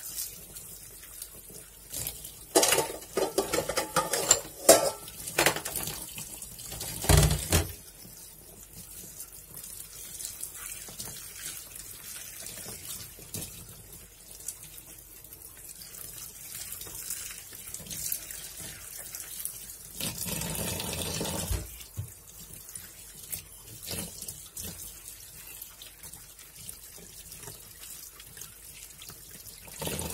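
Water splashing and sloshing in a basin as chopped napa cabbage is washed by hand, squeezed and stirred in the water. Louder splashing comes a few seconds in, a brief heavier splash with a thump about seven seconds in, and another louder stretch about twenty seconds in.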